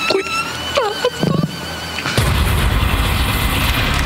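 Light background music with a short vocal sound, then, about two seconds in, a loud bass-heavy TV transition sting that opens the show's logo vignette.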